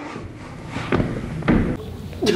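A few dull thuds of impacts, about a second in and again at a second and a half.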